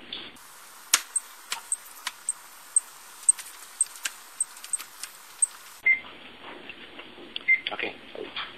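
Handheld barcode scanner beeping about twice a second as books are scanned one after another, with sharp clicks and knocks of books being handled against the shelf. Near the end come two lower single beeps.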